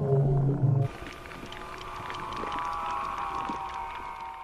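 Ghostly whale call of a Basilosaurus, a prerecorded call played back underwater through a large loudspeaker. A loud low moan cuts off under a second in, followed by a quieter, higher, drawn-out tone that slowly swells.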